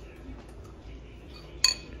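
A spoon clinks once against a ceramic bowl about three-quarters of the way through, a short, sharp strike with a brief high ring, after a stretch of quiet room noise with faint small clicks.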